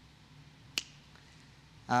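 Quiet studio room tone broken by one short, sharp click about three quarters of a second in; a man's voice starts just before the end.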